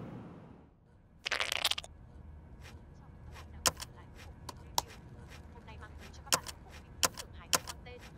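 Laptop keys being pressed: sharp, irregular clicks about half a second to a second apart, after a short burst of hissing noise about a second in.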